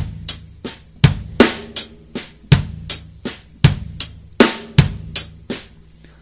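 Drum kit playing a slow linear funk groove in even sixteenth notes, one stroke at a time: kick drum, closed hi-hat and ghost notes on the snare, with accented snare hits. The pattern stops shortly before the end.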